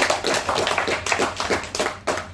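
Audience clapping, many hands at once, dying away near the end.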